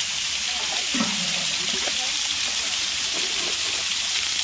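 Water spray from an overhead shower and a hose raining down onto an elephant and the wet ground: a steady hiss.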